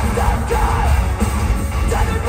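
A metal band playing loud and live, heard from the crowd: heavy drums and bass, with distorted guitars under a woman's sung vocal line.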